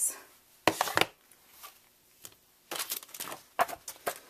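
Paper craft materials being handled on a cutting mat: two sharp taps about a second in, then rustling and light clicking near the end.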